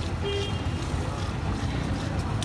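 Steady low rumble of street traffic, with a brief faint tone about a third of a second in.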